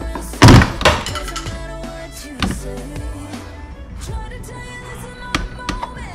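Plastic door-pillar trim panel on a Ford Escape being pried loose, its retaining clips giving way with a loud snap about half a second in, a second one just after and a few smaller knocks later, over background music.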